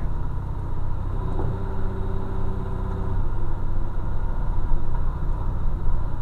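Heavy truck's diesel engine running steadily under engine braking on a downhill grade, a continuous low rumble heard inside the cab. A faint steady tone sits above it for about two seconds, starting about a second and a half in.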